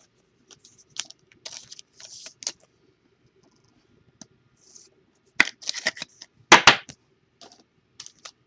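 Hands handling trading cards and foil card packs on a table: scattered light clicks, slides and rustles, with a louder cluster of scrapes and crinkles from about five and a half to seven seconds in.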